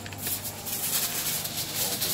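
Irregular rustling and crinkling, a dense crackle of many small scrapes with no clear rhythm.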